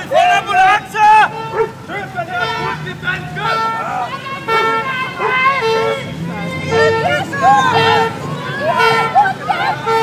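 Several voices crying out and wailing over one another, with a vehicle horn sounding in short repeated beeps about once a second.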